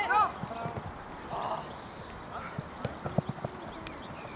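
Youth football match: a player's shout at the start, then scattered short thuds of running feet and the ball on artificial turf.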